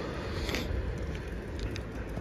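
Outdoor city street ambience: a steady low hum of distant traffic, with a few faint ticks.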